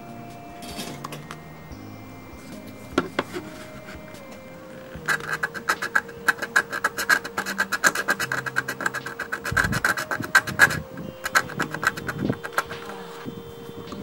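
A small hand-held blade scraping rapidly on the circuit board at a soldered wire joint, in quick dense strokes for about five seconds starting about five seconds in, then a few more scattered strokes.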